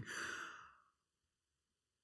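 A man's breathy sigh that fades out within the first second.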